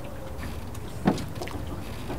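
Water lapping and sloshing, with a steady low rumble and a few small splashes; one louder slap about a second in.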